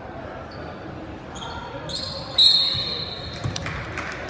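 Referee's whistle in a gym: a couple of short shrill peeps, then one loud, piercing blast lasting about a second, just past the middle, over crowd chatter.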